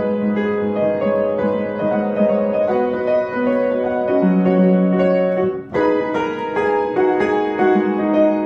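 Upright piano playing a Christmas song in held chords under a melody. There is a short break about six seconds in, then the next chord is struck.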